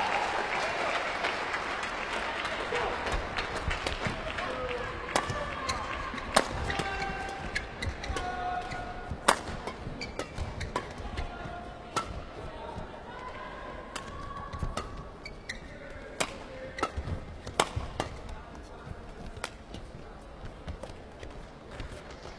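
Badminton rally: rackets striking the shuttlecock again and again at irregular intervals, with short squeaks of shoes on the court mat between the hits. Crowd noise dies away over the first few seconds.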